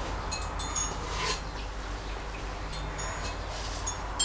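Small chime-like metallic tinkling, a few brief high ringing notes early on and again about three seconds in, over a steady low hum, with a short scrape about a second in.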